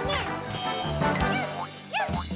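Cartoon soundtrack: background music with short sound-effect pitch glides that rise and fall, including one near the end as two characters join with a sparkle.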